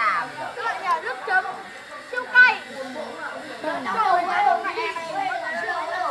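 Several people talking over one another: overlapping, indistinct chatter.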